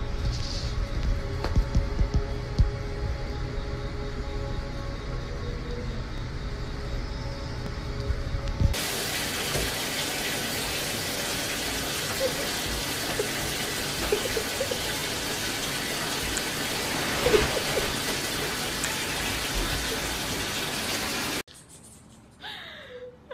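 Background music with a steady low beat. After a cut about nine seconds in, it gives way to a steady rush of water running from a bathtub tap, with a few brief squeaks about halfway through.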